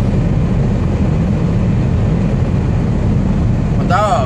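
Steady low drone of a Scania R440 truck's engine and road noise, heard from inside the cab while cruising on the highway.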